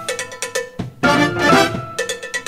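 Live big-band drummer playing a quick run of stick strokes on the kit. The band comes in on a short brass chord about halfway through, and the strokes resume near the end.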